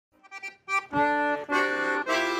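Accordion playing the introduction to a Kuban Cossack folk song: a few faint notes at first, then full, held chords from about a second in.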